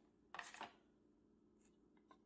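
A brief rustle of a clear plastic protective sleeve being handled and pulled off, about half a second in. Otherwise near silence.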